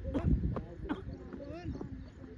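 Several people's voices calling out and chattering, overlapping, with a few quick footfalls on grass near the start.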